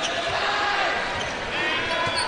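A basketball being dribbled on a hardwood court over the arena's crowd noise, with a short high sneaker squeak near the end.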